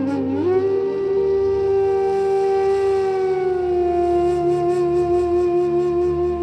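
Slow meditation music: one long held note from a flute-like wind instrument, dipping in pitch and recovering at the start, then settling a little lower about halfway with a gentle waver, over a soft low drone.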